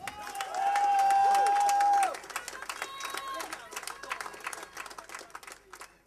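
Audience applause and clapping for a just-introduced band member, thinning out and stopping near the end. For the first two seconds a loud, steady high note is held over the clapping.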